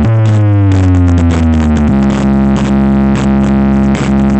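Electronic music played loud through a large DJ sound system of stacked speaker cabinets as a speaker check. A deep synth bass glides downward for about two seconds, then settles on a steady low note under a regular beat.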